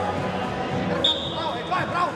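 Several voices calling out over a hall's background noise at a wrestling mat, with a single steady high-pitched tone starting sharply about halfway through and lasting nearly a second.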